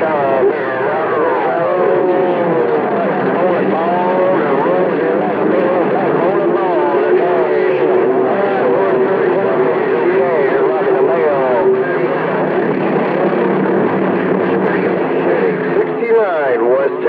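CB radio receiving several distant skip stations at once: overlapping voices talking over each other, garbled and warbling, with a steady whistle running through the middle stretch.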